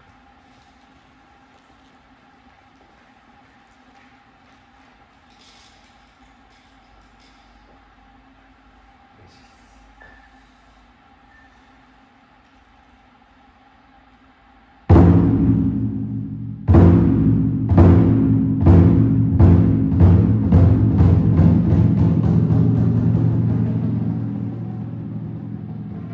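Hira-dou daiko, a large flat-bodied Japanese drum, struck with wooden bachi after about fifteen seconds of quiet room hum. Two heavy booming strokes about two seconds apart, then a run of strokes that speeds up and slowly fades, each ringing on into the next.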